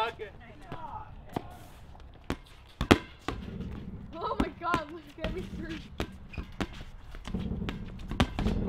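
A rubber playground ball hit against a wall and bouncing on a concrete court: a string of sharp single smacks, the loudest just before three seconds in, amid voices and laughter.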